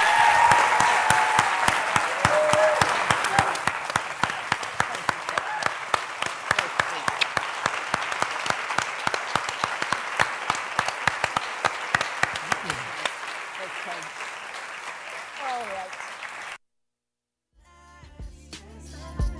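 Audience applauding, with a few voices calling out in the first seconds. The clapping slowly dies down and then cuts off suddenly near the end.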